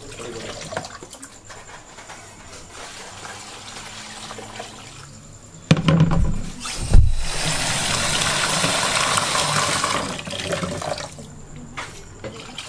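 Light clatter early on, then a couple of knocks and water running or pouring steadily for about three seconds before it tails off, as water is drawn to cover diced potatoes for boiling.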